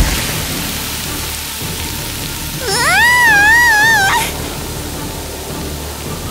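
Cola spraying out of a shaken bottle under pressure: a steady hiss that starts suddenly. About three seconds in, a woman gives a high, wavering scream lasting just over a second.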